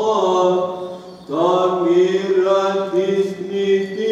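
Byzantine chant: a voice holding long, slowly gliding notes over a steady lower note, with a short breath about a second in before the next phrase begins.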